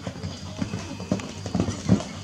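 Hoofbeats of a horse cantering on a sand show-jumping arena, irregular thuds with one louder beat near the end.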